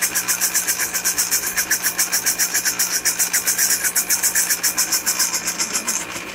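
Black+Decker countertop blender motor running, blending a liquid oil-and-herb dressing, with a steady hum and a fast, even pulsing of about eight to nine beats a second.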